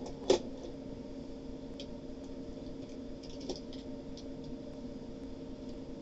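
Quiet room with a steady electrical hum, and one sharp click about a third of a second in, followed by a few faint ticks, as small objects are handled.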